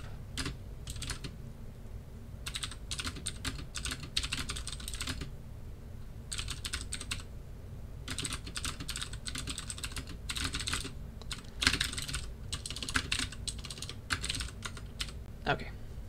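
Computer keyboard typing in uneven runs of quick keystrokes with short pauses between them, over a steady low hum.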